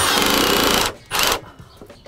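Milwaukee M18 cordless impact driver hammering a hex-head joist hanger screw through a steel joist hanger into the wooden ledger. It stops just under a second in, then gives one short burst a moment later.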